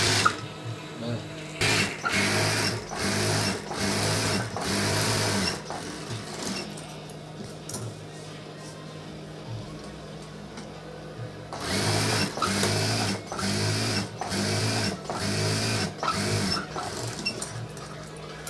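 Industrial lockstitch sewing machine stitching through fabric backed with thin foam, running in a series of short bursts of about a second each, with a quieter gap of several seconds in the middle.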